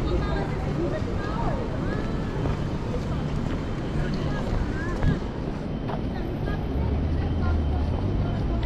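City street ambience: traffic running and passers-by talking indistinctly, with one sharp click about five seconds in and a vehicle's low engine hum growing near the end.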